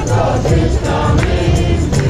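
Music with a choir singing over a steady beat and heavy bass.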